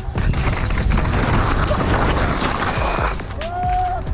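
Helmet-camera sound of a downhill mountain bike descending a rough, rocky track: rushing wind noise and a dense run of knocks and bangs as the bike hits rocks, with music underneath. Near the end a single held, slightly rising tone cuts in.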